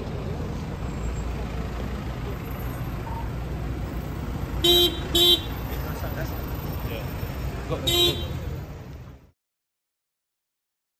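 Street traffic noise, with a vehicle horn tooting twice in quick succession about halfway through and once more a few seconds later; the sound then fades out to silence near the end.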